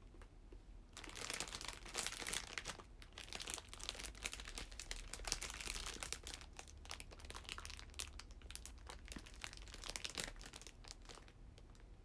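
Plastic wrapper of a packaged bread crinkling and rustling as it is handled and opened. The crinkling starts about a second in and dies down near the end.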